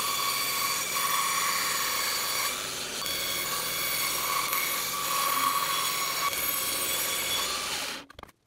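A bandsaw running and cutting through a slab of epoxy micarta made from layered cashmere wool: a steady screeching whine of blade on resin over a hiss. It cuts off suddenly at the end.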